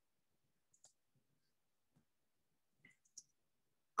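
Near silence with a few faint short clicks: one about a second in and two close together near the end.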